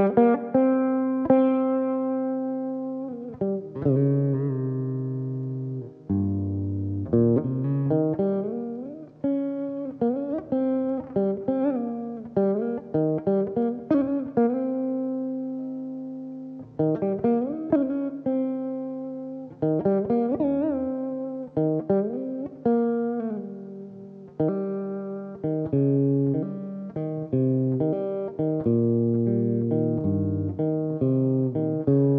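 Solo Carnatic veena: plucked notes that ring and fade, with pitch slides bending between notes, played in phrases of quick runs and longer held notes with a few short breaks between them.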